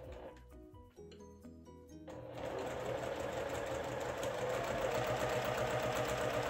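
Electric sewing machine stitching steadily at a fast even pace, starting about two seconds in, sewing a corner-to-corner diagonal seam across small cotton quilt pieces. Soft background music with a few held notes fills the opening seconds before the machine starts.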